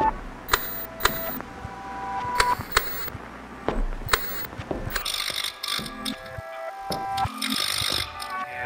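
Glitchy electronic sound effects of a television on static: sharp clicks and short steady beeps in the first half, then a denser stretch of static hiss layered with several held tones from about five seconds in.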